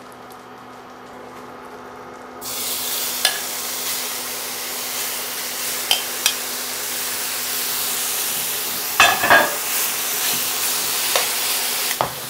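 Beef cubes searing in hot oil and butter in a stainless steel skillet: quieter at first, then a loud steady sizzle that starts suddenly about two seconds in as the meat goes into the fat, with a few metal clinks against the pan, a cluster of them near the end. The strong sizzle shows a pan hot enough to sear the cubes rather than boil them.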